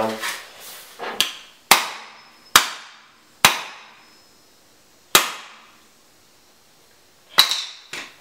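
Hammer banging on a computer circuit board on a tile floor: six sharp blows at uneven intervals, each ringing out briefly, as a bent pin is hammered down.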